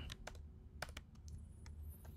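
Typing on a computer keyboard: about seven faint key clicks in small clusters over a low steady hum.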